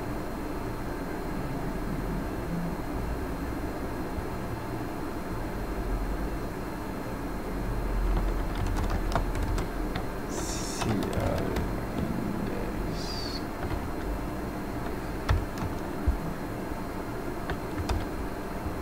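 Computer keyboard typing: scattered key clicks, mostly in the second half, over a steady low background hum.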